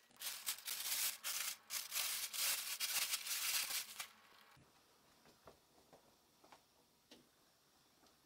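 Rustling, rubbing noise for about four seconds, ending abruptly, followed by a few faint taps.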